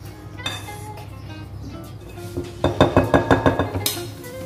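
A wire whisk beating brownie batter in a glass mixing bowl, clinking quickly and evenly against the glass for about a second in the second half, over background music.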